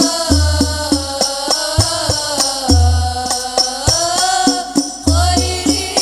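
An Al-Banjari ensemble performing sholawat: a sung devotional melody with sliding, ornamented pitch over interlocking strokes on rebana (terbang) frame drums. The drums strike several times a second, and a deep bass drum booms three times, about 2.4 seconds apart.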